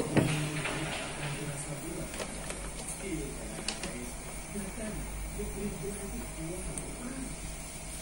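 Faint voices talking in the background, with a few light clicks of analog multimeter test leads being handled.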